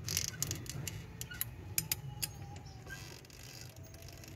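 Faint, irregular light clicks and ticks as a Mitsubishi 4D56 diesel's crankshaft is turned slowly by hand, bringing the pulley notch up to the TDC timing mark.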